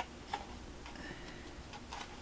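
A few faint, irregular clicks and light rustles of a sheet of patterned paper being held and shifted by hand.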